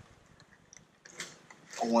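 Mostly quiet, with a few faint clicks and a short rustle of handling about a second in; a man's voice starts near the end.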